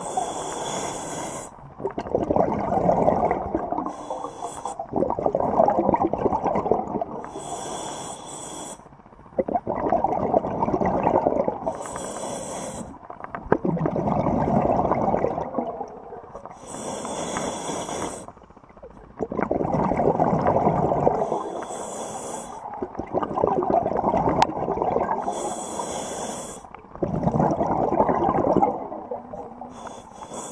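Scuba diver breathing underwater through a demand regulator: a short hissing inhale about every four seconds, each followed by a longer bubbling rumble of exhaled air.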